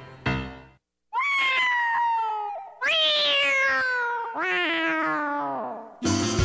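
Cartoon cat yowling: three long yowls, one after another, each sliding down in pitch, the last falling lowest.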